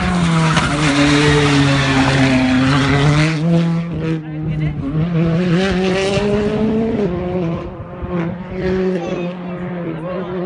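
A rally car's engine at full throttle passing close by on a stage road, then pulling away. Its note is loudest during the first few seconds, rises and drops in pitch several times, and fades somewhat in the last few seconds.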